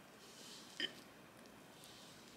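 Faint sounds of a fork cutting down through a soft chocolate pancake stack, with one short clink of the fork against the ceramic plate a little under a second in.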